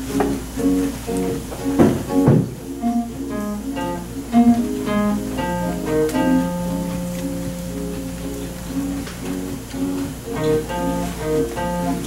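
Two acoustic guitars playing a duet: a repeating picked pattern of short notes, with two sharp strummed strokes about two seconds in. A low note is held from about six to nine seconds before the picked pattern comes back.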